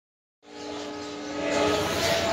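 Train horn sounding as a held note that starts just under half a second in and steps up in pitch near the end, over a hiss of station noise.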